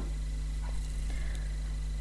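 Steady low electrical hum with a faint hiss, with a few faint light ticks about halfway through.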